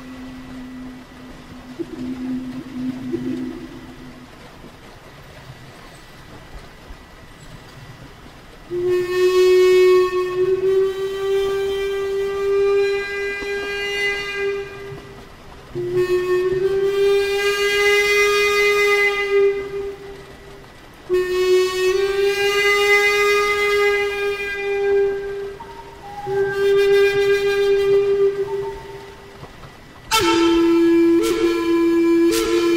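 Zen flute in the Native American style playing slow, long held notes: a lower note fading out in the first few seconds, then, after a quiet gap, four sustained notes of several seconds each on nearly the same pitch, each rising slightly at its start.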